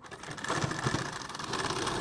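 Domestic sewing machine stitching a seam through thin fabric, picking up speed in the first half second and then running steadily with a fast, even clatter of needle strokes.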